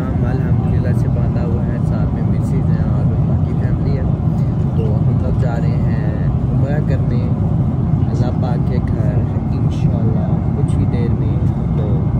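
Steady low rumble of airliner cabin noise from the engines and airflow, with a man talking over it.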